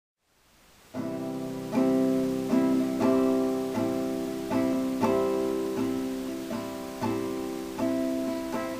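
Acoustic guitar strumming chords in a steady rhythm, a fresh strum about every three-quarters of a second, starting about a second in: the instrumental intro before the vocals come in.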